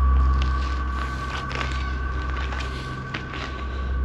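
A steady low rumble with two faint steady high tones, and scattered small crunches and clicks of footsteps and camera handling on burnt debris.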